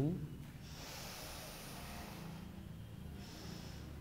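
A person breathing through the nose: a long breath about half a second in, then a shorter one a little after three seconds.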